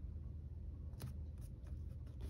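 Washi tape and paper stickers being pressed and smoothed by hand onto a planner page: quiet paper handling with one sharp click about halfway through and a few lighter ticks after it.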